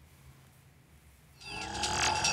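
Near silence, then about a second and a half in the programme's closing theme music comes in, with bright steady electronic tones and a falling sweep, growing louder.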